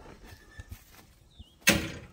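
John Deere Gator utility vehicle rolling slowly over a dirt track, running quietly, with one faint chirp about a second and a half in. Near the end a man lets out a short, loud "uh".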